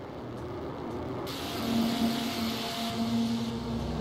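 Synthesized noise textures from a VCV Rack software modular synth patch: a churning noise bed, with a bright hiss coming in about a second in and a steady low drone tone joining under it. A deep rumble enters near the end.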